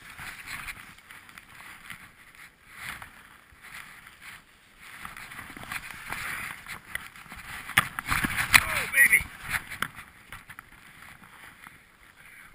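Skis sliding and turning through deep powder snow, a hissing swish that comes in repeated surges with each turn. Sharper knocks and scrapes come around eight to nine seconds in.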